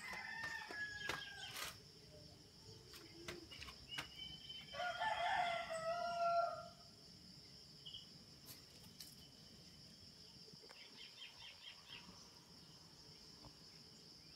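A rooster crows once, about five seconds in, a single call lasting about two seconds, over a steady high drone of crickets.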